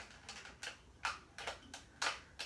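A handful of faint, sharp plastic clicks, spaced unevenly, as a Bop It Extreme toy with a broken spin-it handle is handled and worked on.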